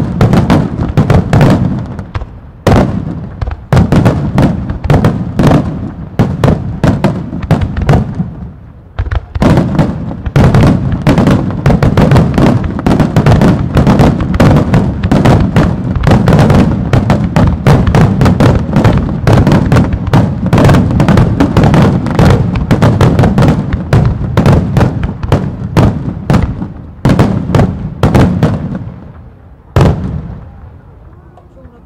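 Aerial firework shells bursting in a dense, rapid barrage, many bangs a second over a continuous low rumble. It eases briefly about nine seconds in, builds again, and dies away near the end after one last loud bang.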